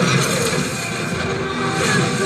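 Film soundtrack playing from a screen: music mixed with battle sound effects, with a surge of noisy effects at the start and another near the end.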